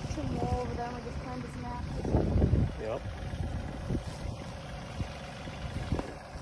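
Wind buffeting the phone's microphone in an open field: a low, uneven rumble with a stronger surge about two seconds in.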